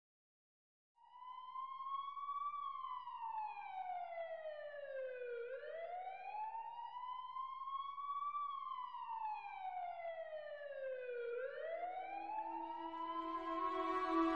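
Ambulance siren wailing, its pitch rising and falling in slow sweeps of roughly six seconds each, starting about a second in. Music with long held notes comes in near the end.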